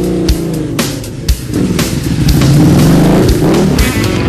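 Blues-rock band playing an instrumental passage with drum hits. Under it, a low sound rises and falls in pitch twice, like a motorcycle engine being revved in the mix.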